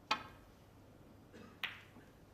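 Snooker cue tip striking the cue ball with a sharp click, then about a second and a half later a second click as the cue ball hits a red at the far end of the table, with a faint knock just before it.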